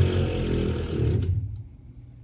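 Cordless drill running steadily as it backs a screw out of a pergola beam, stopping a little over a second in.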